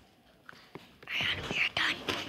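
A person whispering: near quiet, then about a second in a few short breathy whispered bursts.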